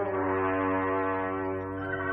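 Radio-drama music bridge: a sustained brass chord, held and slowly fading.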